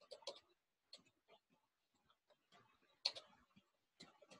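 Faint computer keyboard typing: scattered soft key clicks with long gaps between them, slightly louder at the start and about three seconds in, against near silence.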